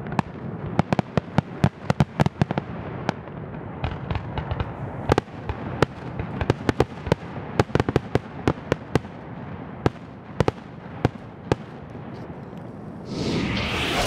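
Fireworks display going off: a rapid, irregular string of sharp bangs and crackles, several a second, over a steady rumble of bursts. A louder rushing noise swells near the end.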